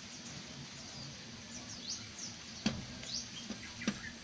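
A rooster's beak striking window glass about three times in the second half, sharp taps as it pecks at its own reflection. Small birds give short high chirps in the background.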